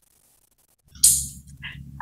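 Dead silence for about the first second, then the video-call microphone's faint low hum returns with a short hiss and a faint small sound, like a breath just before speech.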